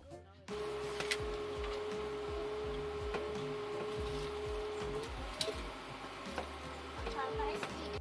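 Front-loading washing machine running a wash cycle: a steady motor whine from the drum drive, which rises slightly and stops about five seconds in, with a few light clicks and a low rumble from the turning drum.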